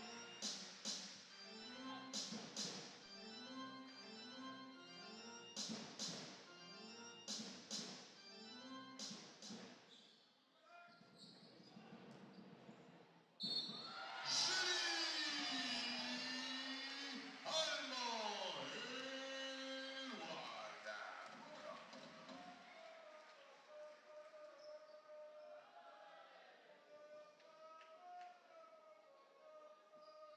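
Arena music over the public-address system, echoing in a large sports hall, with a basketball bouncing on the hardwood court through the first ten seconds. About thirteen seconds in, louder gliding music or an amplified voice comes in over the PA, and it fades to a softer wavering tune.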